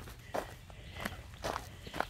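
A person's footsteps on loose wood-chip mulch, a short sharp step about two to three times a second while walking a dog on a leash.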